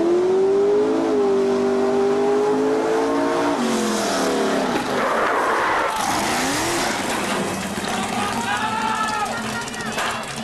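Racing vehicle's engine held at high revs. It drops away about three and a half seconds in, then is revved briefly once more.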